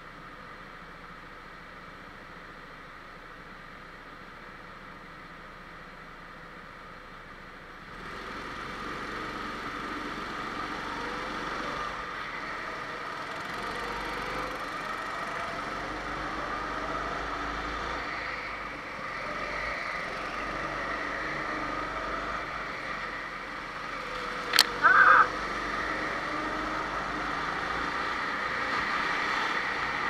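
Go-kart engine heard from on board, its pitch rising and falling with the throttle through the corners; it grows louder about eight seconds in. A brief loud sound cuts in about 25 seconds in.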